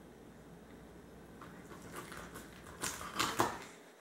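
Knife cutting crosswise through a whole American shad on a plastic cutting board: a few short crunching, clicking strokes as the blade goes through the fish and its backbone, starting about a second and a half in and loudest near the end.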